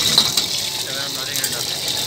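Steady hiss of hot oil in a carbon-steel wok over a strong gas flame, with a metal ladle clinking and scraping against the wok, a sharp clink just after the start.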